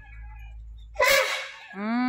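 One loud, sneeze-like blast of breath about a second in, sudden and dying away over about half a second. Near the end a voice draws out 'dii' on a rising pitch.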